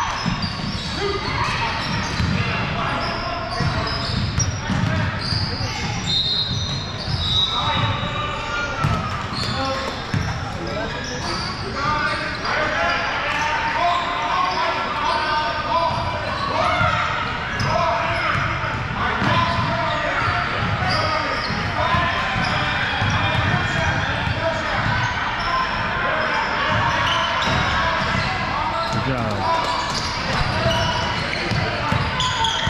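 Basketballs bouncing on a hardwood gym floor amid the chatter and calls of players and spectators, echoing in a large hall.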